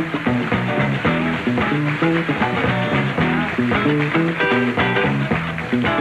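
Electric guitar playing a choppy soul-funk riff over a repeating bass line and drums, a live band groove.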